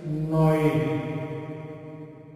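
A voice drawn out on one steady pitch, like a chant or long hum. It swells near the start, then fades away steadily.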